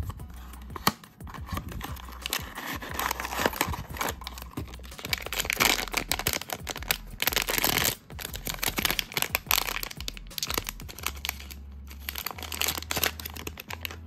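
Cardboard blind box being opened, then a foil blind-box bag crinkling and tearing open, a long run of sharp crackles and rustles that is busiest about midway.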